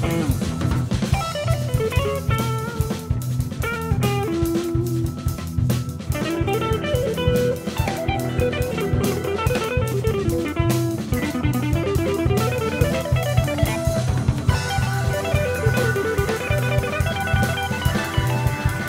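A band playing an instrumental passage: guitar lines running up and down over a drum kit and a pulsing low bass line.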